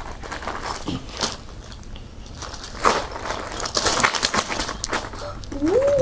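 Small metal parts in plastic bags, boat circuit breakers and anodes, jingling and rustling as they are shaken out of a knit Christmas stocking onto a carpeted floor, in a string of short clinks.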